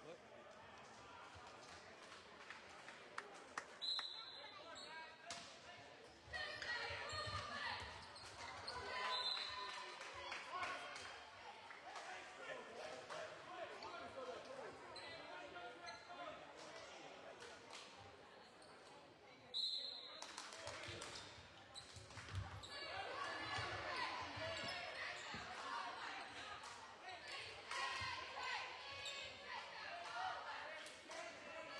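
Gym sounds at a basketball game: a basketball bouncing on the hardwood floor among crowd voices. A short, high whistle blast comes about four seconds in and again about twenty seconds in, and each is followed by a swell of crowd voices.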